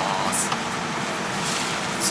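Steady cabin noise inside a Boeing 787 airliner with the doors closed.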